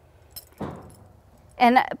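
Metal horse bit and its chain clinking briefly as the bridle is hung back on a wall rack, followed by a soft rustle.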